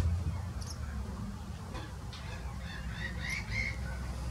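Wild birds calling: a couple of short high chirps about half a second in, then a run of calls with short gliding notes in the second half, over a steady low rumble.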